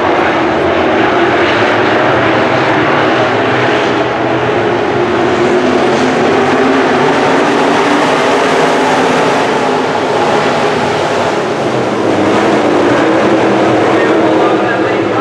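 A pack of IMCA Sport Modified dirt-track race cars' V8 engines running hard at racing speed. The noise is loud and continuous, with several engine notes overlapping.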